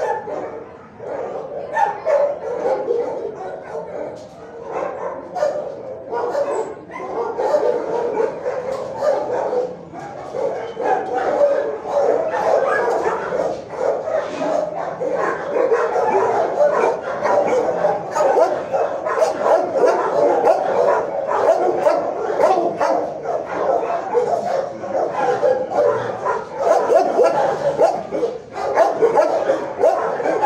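Many dogs barking and yipping at once in an animal shelter's kennel block: a loud, continuous, overlapping din.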